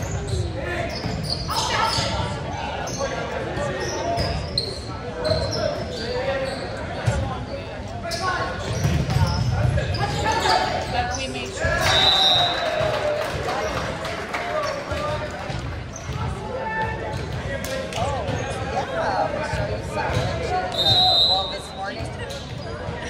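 Volleyball play in a reverberant gym: ball strikes and thuds with players' shouts and calls. A referee's whistle blows briefly about twelve seconds in and again near the end.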